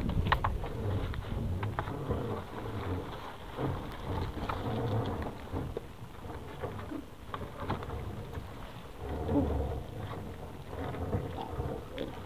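Wet fishing net being hauled by hand over the side of a small boat: steady rustling and dripping with scattered light clicks, over a low, uneven rumble.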